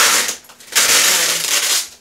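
Packing material rustling and crinkling as it is handled: a short burst, then a longer one lasting about a second.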